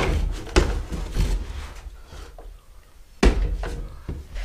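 Knocks and clunks of a foldable mobility scooter's frame halves and floor panel being handled and fitted together, a few light knocks at first, then one loud knock a little over three seconds in.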